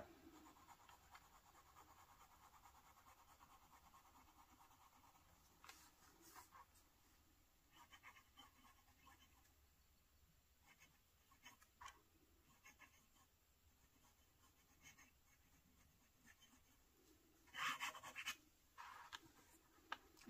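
Faint scratching of a medium steel Bock fountain pen nib writing on Tomoe River paper, in short strokes with pauses between them. The loudest strokes come a couple of seconds before the end.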